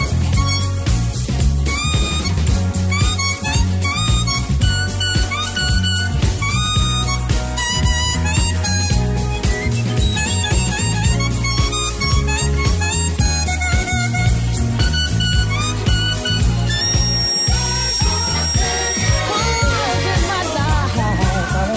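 Instrumental break of a 1960s soul song: a harmonica plays a stepping melody line over electric bass, drums and a steady beat.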